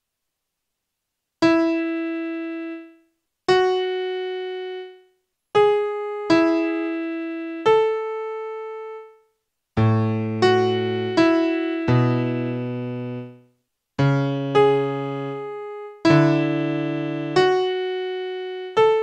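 Solo electric-piano-style keyboard music: slow single notes in the middle register, starting about a second and a half in, each left to ring and fade, some with short silences between. From about ten seconds in, low bass notes join beneath them and the playing gets denser.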